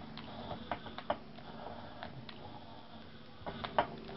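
Rocker switches on a handheld wired control box clicking irregularly as they are pressed, with the loudest clicks near the end, over a faint steady low hum.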